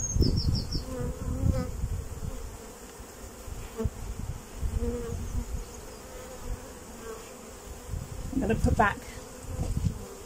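Honeybees buzzing around an open hive box, a steady hum. In the first couple of seconds a metal hive tool scrapes wax off the wooden frame top bars.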